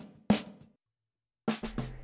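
Two snare drum hits about a third of a second apart, each with a short reverb tail, from a solo snare track processed with a half-second reverb and tape-style saturation. About a second and a half in, the drum recording starts playing again.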